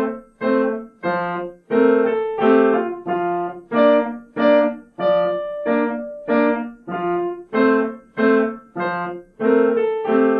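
Yamaha upright piano played solo: short, separate notes and chords struck about twice a second, each dying away before the next.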